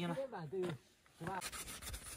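A microfibre cloth rubbing frost off a motorcycle's rear-view mirror, in quick scrubbing strokes that start about one and a half seconds in.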